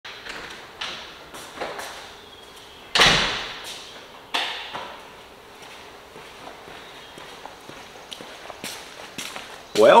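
Footsteps on a bare concrete floor in an empty, echoing garage, with a loud thump about three seconds in and a second one a little over a second later. A man says a single word right at the end.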